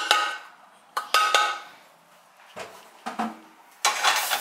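Stainless steel strainer pot knocking against the rim of a saucepan, a few sharp metallic clanks with a brief ring in the first second and a half, as drained ground beef is tipped back in. Softer clatter follows, and a louder knock near the end as the pan is set down on the stove.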